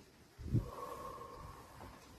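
A person breathing out hard through the nose during slow exercise, starting with a low thump about half a second in, followed by a faint held tone lasting about a second.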